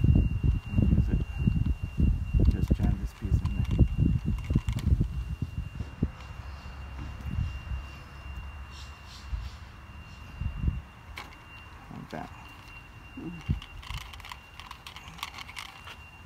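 Screen spline roller pressing rubber spline into an aluminium screen-frame channel: low rubbing, knocking handling sounds, densest in the first five seconds, then scattered light clicks. A faint steady high-pitched tone runs underneath.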